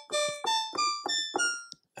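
Helium software synthesizer playing a bell patch: a quick phrase of about five notes, each bright at the strike and dying away. The main amp release is raised to about half a second, so each note rings briefly into the next.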